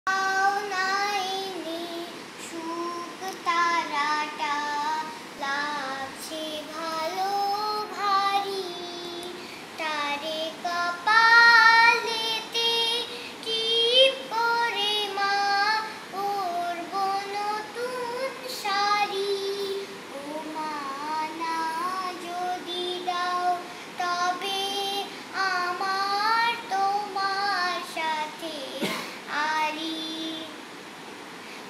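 A young girl singing a song solo and unaccompanied, in phrases of held, gliding notes.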